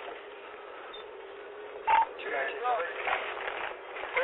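Police radio in a moving patrol car: steady cabin road noise, then a short beep about halfway through, followed by radio voice traffic.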